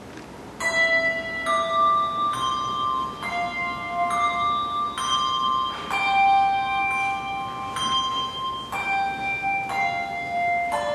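Handbells played one note at a time in a slow melody, a new note about once a second, each ringing on under the next. The first note comes about half a second in.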